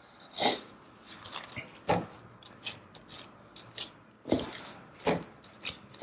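Gloved hand folding and pressing a soft, wet dough on a stainless steel worktop: a handful of short rubbing and scraping sounds at uneven intervals, the loudest about half a second in, near two seconds and after four seconds.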